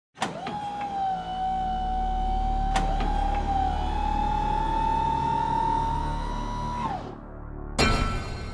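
Intro sound effects for an animated logo: a motor-like whine that rises slowly in pitch over a low rumble, marked by a couple of sharp clicks. The whine cuts off about seven seconds in, and a sharp hit follows near the end.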